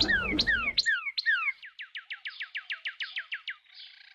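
A bird calling: a run of clear whistled notes, each sliding down in pitch, that speed up and shorten partway through.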